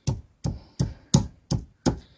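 Black granite pestle pounding a garlic clove in a granite mortar: a steady run of knocks, about three a second.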